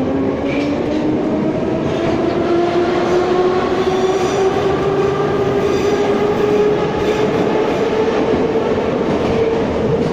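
Metro train heard from inside the car as it picks up speed: the traction motors' whine rises steadily in pitch over the rumble of the running gear, levelling off near the end.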